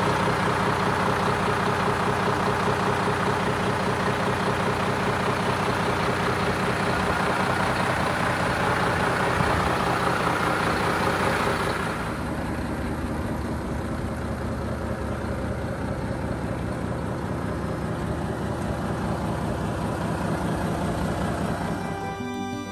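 Volvo FM450 tractor unit's 13-litre six-cylinder diesel engine idling steadily. About halfway through, the sound becomes quieter and duller.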